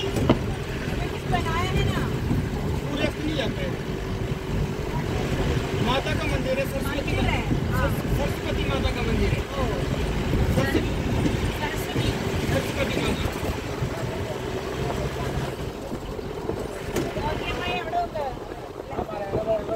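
Engine and road rumble of a vehicle moving through a busy street, with a steady hum throughout and indistinct voices in the background.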